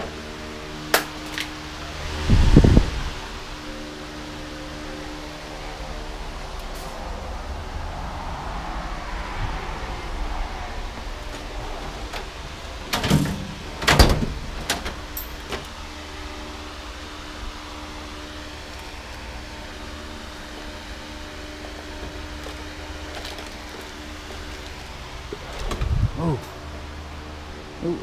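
Metal tools clanking and a tool chest being rummaged through, with a few sharp knocks and clatters, the loudest about two and a half seconds in and about fourteen seconds in. A steady hum runs under it throughout.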